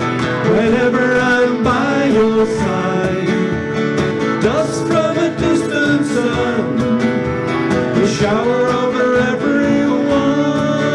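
Live acoustic folk-rock band playing a song: strummed acoustic guitars and a mandolin-family instrument over cajon percussion, with singing.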